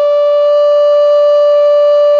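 A Native American flute in A (High Spirits Sparrow Hawk, aromatic cedar) playing one steady, pure held note, a D fingered with the top two holes open.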